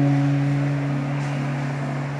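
Acoustic guitar letting a low note and its octave ring out, slowly fading.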